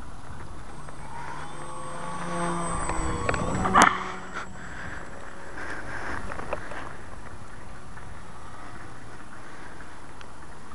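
Electric RC Cap 232's brushless motor and 9x4 propeller buzzing as the plane flies past, its pitch sliding down and growing louder up to about four seconds in. A single sharp crack near four seconds in is the loudest sound.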